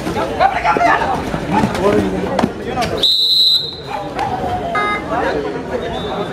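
Spectators shouting and chattering at a kabaddi match, broken about three seconds in by one short, high, steady blast of a referee's whistle as a raid ends and points are scored.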